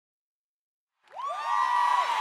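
Logo intro sound effect rising out of silence about a second in: several pitches slide upward one after another and level off into a held tone over a hiss.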